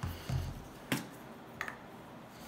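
Plastic cap pulled off a small sneaker-cleaner bottle to uncover its foam applicator: one sharp click about a second in and a smaller click a little later, after a soft low thump at the start.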